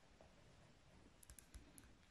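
Near silence with a few faint clicks of a ballpoint pen writing on a workbook page.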